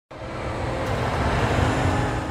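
Steady rumbling background noise, like traffic, fading in over the first half second.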